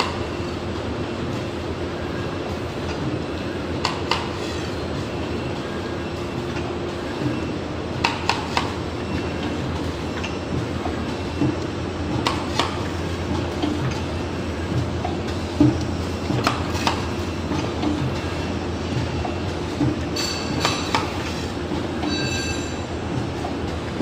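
HP-160AY one-colour pad printing machine cycling, with a steady hum and a sharp clack every few seconds as its pneumatic cylinders drive the pad down onto the print and back.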